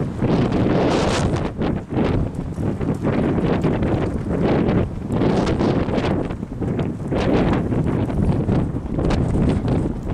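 Wind buffeting the microphone in gusts, a loud rumbling rush that rises and falls every second or so.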